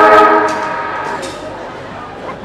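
Football ground siren sounding a steady single-pitched tone that cuts off about half a second in and dies away over the next half second, the signal for play to resume after the break.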